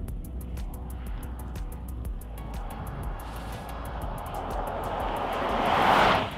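Background music with a steady ticking beat, over a car approaching on the road: its road and engine noise builds to a peak near the end, then falls away.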